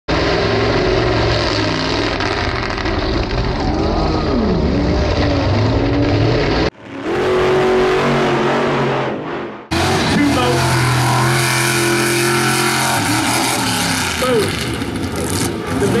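Mega truck's engine revving hard, its pitch rising and falling as the driver works the throttle over obstacles. About seven seconds in, a roughly three-second intro sound effect breaks in before the engine sound returns.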